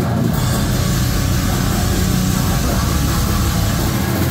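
Live slam deathcore band playing at full volume: heavily distorted downtuned guitars, bass and drums in a dense, continuous wall of sound.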